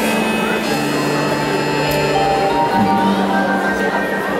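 Live band music: a slow instrumental passage of long held notes that change pitch every second or two.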